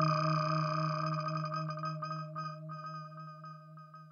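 Korg Prologue synthesizer patch: a steady low drone under bell-like mallet tones, the notes thinning out as the sound fades away.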